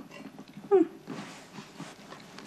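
A person's short "hmm", a brief hummed vocal sound just under a second in, over quiet room tone.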